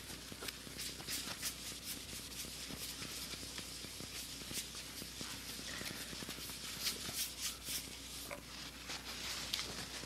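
A cloth rubbing and scrubbing on a bass guitar's gloss-finished body, wiping off sticker residue and solvent: a continuous scratchy swishing made of many quick, irregular strokes.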